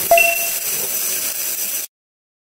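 Stick (MMA) welding arc hissing and crackling steadily. Just after the start, a bright ding sound effect rings and fades. The sound cuts off suddenly near the end.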